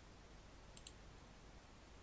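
Near silence with two faint, quick clicks close together about three-quarters of a second in.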